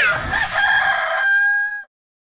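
Rooster crowing sound effect: the long, steady held last note of a cock-a-doodle-doo, which cuts off sharply near the end.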